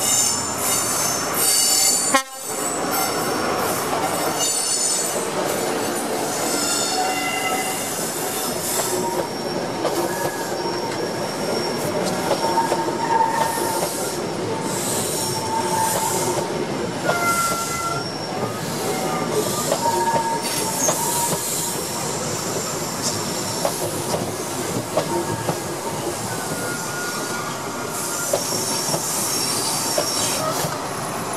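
A First Great Western High Speed Train passing close by. The Class 43 diesel power car goes by first, then the Mark 3 coaches roll past with steady wheel-on-rail rumble, clicks over the rail joints and high, wavering wheel squeals. The sound cuts out briefly about two seconds in.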